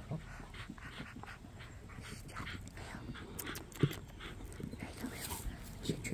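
A dog panting quietly, with one brief louder sound a little under four seconds in.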